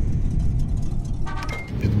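Steady low rumble of outdoor background noise, such as traffic or wind on the microphone, with a brief voice sound about a second and a half in.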